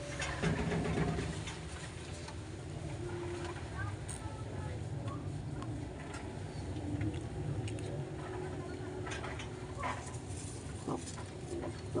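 Pigeon loft sounds: faint, low pigeon coos now and then over a steady low rumble, with a brief rustle about half a second in and scattered light clicks.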